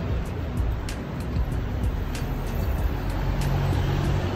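City street traffic noise: a steady rush of passing vehicles with a low engine hum, under background music with a steady beat.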